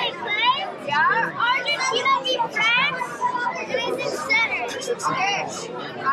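Children's voices talking over one another, high-pitched chatter in a room.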